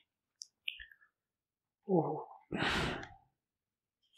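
A man's short voiced sound followed by a breathy exhale close to the microphone, with a few faint mouth clicks before it.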